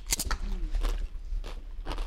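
Crisp crunching of a tortilla chip with guacamole being bitten and chewed, a handful of sharp crunches spread over about two seconds.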